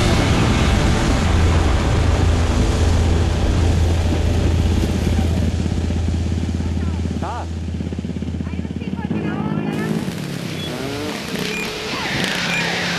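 Quad bike (ATV) engines revving on a desert slope, heard through heavy wind noise on the microphone, with a few rising revs about seven seconds in and more towards the end.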